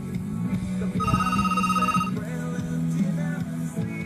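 A Rakhine song playing, with steady low notes underneath. About a second in, a high, rapidly pulsing tone sounds for about a second.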